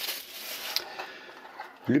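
Plastic wrapping crinkling in the hand, ending in a short tick under a second in, then fainter handling of a cardboard box.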